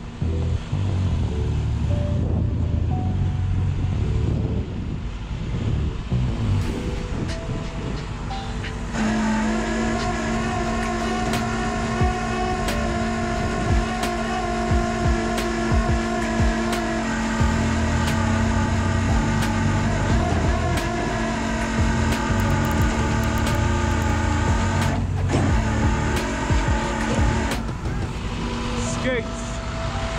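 Rollback tow truck running with its bed winch dragging a car that is stuck in park up the tilted flatbed. There is a low engine rumble throughout, and a steady whine under load from about a third of the way in, which breaks briefly near the end and then returns.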